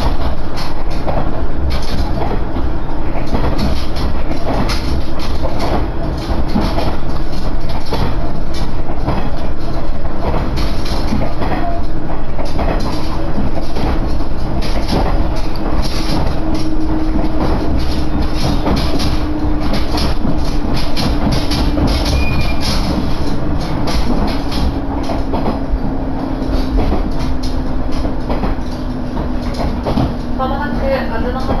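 Inside a diesel railcar under way: wheels clattering over rail joints over a steady rumble. In the second half a low engine tone slowly falls in pitch as the train slows on its approach to a station.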